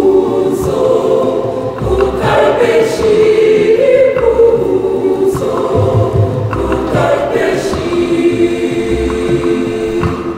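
Mixed church choir singing a communion song in parts, with hand drums beating low under the voices every second or two.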